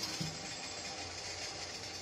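Steady low rumble and hiss of water boiling in a steel pot beneath a covered steamer plate.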